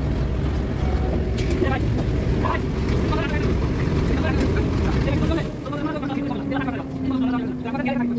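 Asphalt plant machinery running with a heavy low rumble that drops away about five seconds in. After that, a steady hum remains, sinking slightly in pitch.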